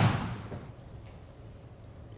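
The fading tail of a Titleist TSR3 driver striking a golf ball into a simulator's impact screen, dying away over about half a second, then quiet room tone with a low hum.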